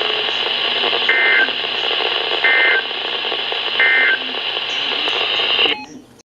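Weather alert radio sending the Emergency Alert System end-of-message code: three short bursts of warbling two-tone digital data, about 1.4 seconds apart, over a steady static hiss. The audio then cuts off suddenly near the end as the receiver mutes after the alert.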